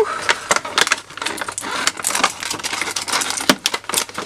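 Irregular rustling and clicking as a pack of foil-art transfer foil sheets and small craft items are handled and gathered up on a work table.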